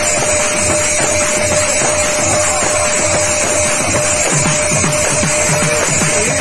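Kirtan ensemble playing: a khol barrel drum beaten in a fast, dense rhythm with small hand cymbals ringing above it and a steady held tone underneath.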